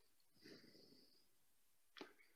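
Near silence: room tone, with a faint brief hiss about half a second in.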